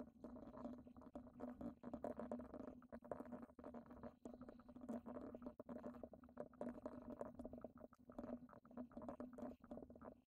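Faint computer keyboard typing: irregular quick key clicks, several a second, over a steady low hum.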